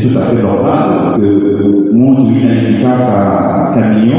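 A man's voice amplified through a microphone and loudspeakers, delivered in long held pitches rather than ordinary speech.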